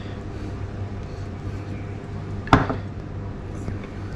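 A single sharp clink of kitchenware about two and a half seconds in, a plate or the stainless steel pot being knocked as they are handled, over a low steady hum.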